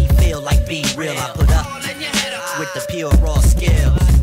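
Hip hop track: rapping over a beat with a heavy kick drum and a sustained steady tone. The kick and bass drop away for a second or two in the middle and come back in near the end.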